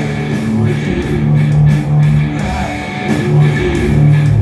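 Rock band music with electric guitar holding long, low chords that break off and start again, with no singing.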